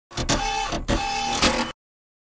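Short channel-logo sound effect: a clattering, mechanical-sounding burst with a few sharp hits and a held tone, cutting off suddenly before the logo card appears.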